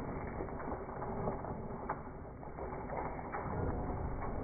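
Slowed-down, lowered-pitch sound of Zwartbles sheep trotting past over muddy ground: a dense run of irregular, drawn-out hoof knocks over a low rumble, underwater-sounding.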